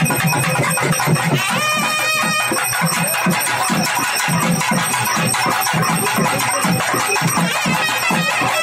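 Live festival music: rapid, dense drum beats throughout, with a held wind-instrument note about a second and a half in.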